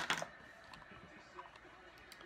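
Fishing lure being handled and set down on a table: one sharp click right at the start, then a few faint ticks over quiet room tone.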